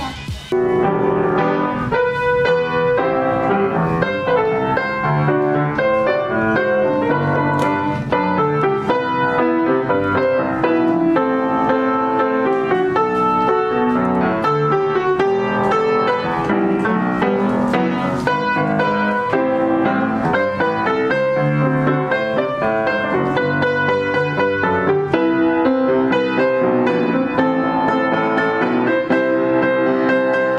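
A new Knabe upright acoustic piano being played in a continuous flowing piece, melody over chords, starting about half a second in. It is a sound test of the new instrument.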